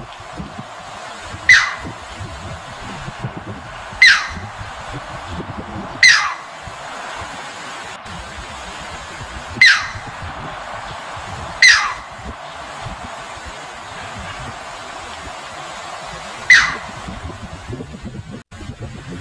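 Six short, sharp calls, each sliding steeply down in pitch and spaced a few seconds apart, from a striated heron, over the steady rush of a shallow rocky stream.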